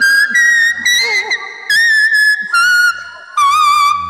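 A small plastic toy whistle played as a tune: a run of about six high, reedy held notes at changing pitch, separated by short breaks, some bending slightly.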